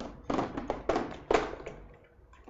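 Barber's scissors snipping hair, a quick irregular run of sharp metallic clicks, several a second.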